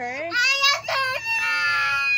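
A young girl crying hard: a short rising wail, then a long high wail held on and slowly falling.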